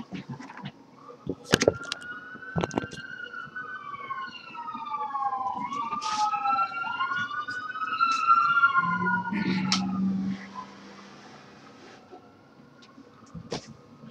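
Sirens wailing, several rising and falling tones overlapping and crossing one another, loudest about two-thirds of the way through before fading. A few sharp knocks in the first three seconds.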